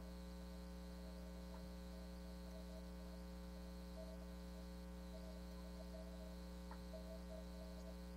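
Faint, steady electrical hum with a stack of even overtones, unchanging throughout: mains hum in the audio feed of a video call.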